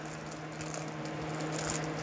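Faint handling noise from a small snow globe and its styrofoam packing being turned in the hands, with a few light ticks, over a steady low hum.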